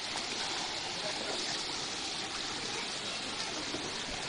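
Shallow mountain stream running over rocks in small cascades: a steady rush of water.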